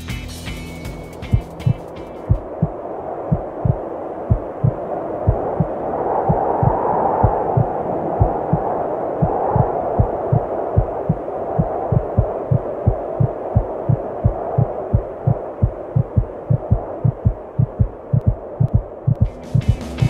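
Rock background music cuts off about two seconds in and gives way to a muffled hum with a fast, regular heartbeat sound effect, about three low thumps a second. The music comes back just before the end.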